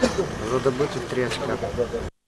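A man's voice talking, over a steady background noise.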